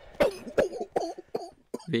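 A person coughing: about four short coughs in quick succession, roughly two a second.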